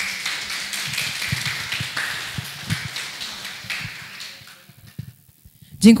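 Audience applauding, a small crowd's clapping that fades away after about four to five seconds.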